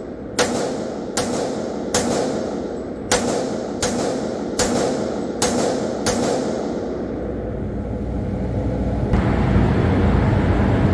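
Eight handgun shots fired at an indoor range, about one every three-quarters of a second, each with a short echo. Steady noise follows the last shot, and a louder low rumble sets in near the end.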